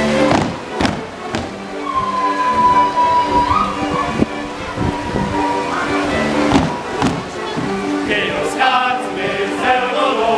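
Polish folk dance music playing, with sharp stamps from the dancers' feet on the wooden stage; a long high held note comes about two seconds in, and voices ring out together near the end.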